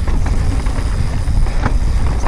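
Wind rumbling on an action camera's microphone while a mountain bike rolls fast down a stony dirt singletrack, with tyre noise and scattered short clicks and rattles from the bike over the rocks.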